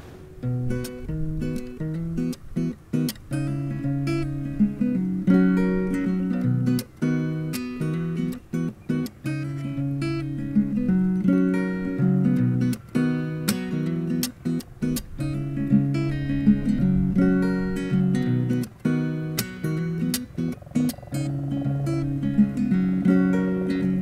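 Steel-string acoustic guitar with a capo playing an instrumental introduction: a steady run of plucked chords and single notes, with no voice.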